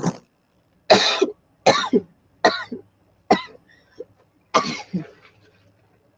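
A person coughing in a fit of about six separate coughs, a second or less apart, dying away about five seconds in.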